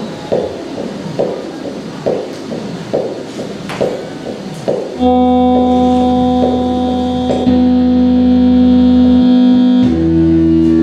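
Live experimental electronic music. A noisy pulse repeats a little faster than once a second, then about halfway through a loud synthesizer-like chord of steady held tones cuts in and shifts slightly a couple of seconds later.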